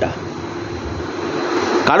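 A steady rushing noise that swells slightly toward the end, with a faint low hum under it.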